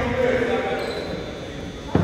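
A basketball striking hard once near the end, the loudest sound here, with the echo of a large gym, over spectators' chatter.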